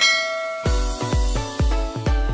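A bright bell-like notification chime rings at the start and fades, then electronic music with a deep bass beat, about two beats a second, comes in just over half a second in.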